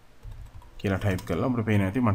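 A few keystrokes on a computer keyboard in about the first second, typing a short command and pressing Enter. Speech follows.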